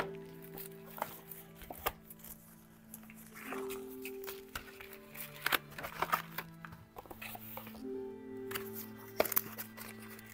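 Soft background music with sustained low notes, over scattered clicks and taps from hands handling a cardboard accessory box and its packaging.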